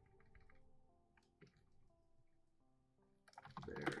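Soft, scattered keystrokes on a computer keyboard as words are typed, coming more quickly near the end, over quiet background music.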